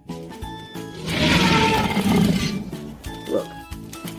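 A dinosaur-style roar sound effect, starting about a second in and lasting about a second and a half, over background music.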